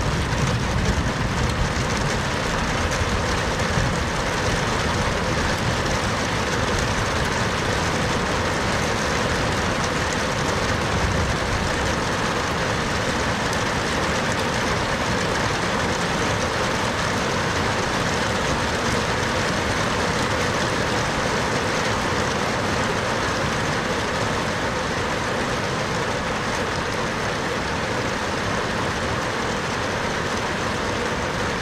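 Steady heavy rain falling on a street and nearby surfaces. A low rumble of thunder runs under it through roughly the first dozen seconds and fades away.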